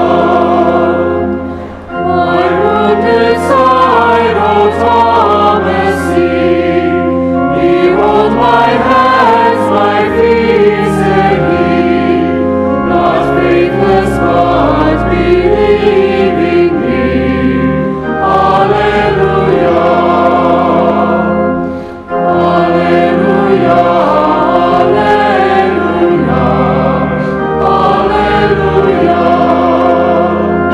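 Choir singing a hymn over sustained low accompanying notes, with short breaks between phrases.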